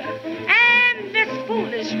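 Small swing band with a female vocal, from a 1939 shellac 78 rpm record played on a turntable. The voice bends and holds a note over horns and rhythm section, with the narrow, treble-less sound of an old disc.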